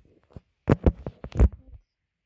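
A few loud knocks and bumps right at the microphone, bunched together about a second in: the camera being handled and knocked as it is moved.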